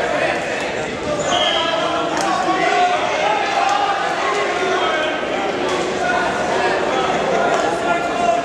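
Indistinct voices of people talking in a gymnasium, with a few scattered sharp thuds.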